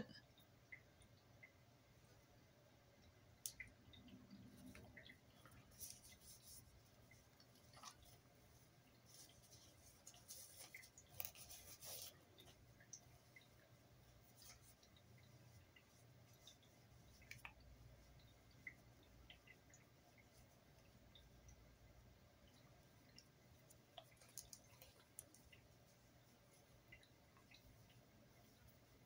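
Near silence with faint, scattered rustles and small clicks from handling makeup and a tissue being dabbed against the face. The rustling is a little stronger about halfway through.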